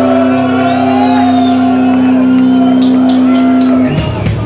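Amplified electric guitar holding one steady distorted note as a drone, with feedback whining above it. Just before the end it cuts off and the full band comes in with drums, starting a punk/grindcore song.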